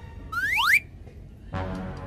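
A comic slide-whistle sound effect: two quick rising whistles, overlapping, about half a second in. Background music starts about a second and a half in.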